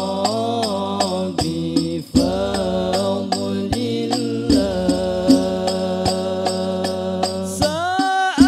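A male lead voice sings a long, drawn-out sholawat melody into a microphone, holding notes and gliding between them. Under it, other voices hold low notes and frame drums strike at an even pace.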